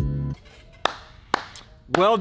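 Plucked-guitar background music ends shortly after the start, followed by three sharp hand claps about half a second apart.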